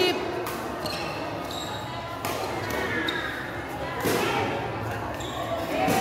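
Badminton rackets striking a shuttlecock during a rally, a few sharp hits one to two seconds apart, echoing in a sports hall, with spectators' voices in the background.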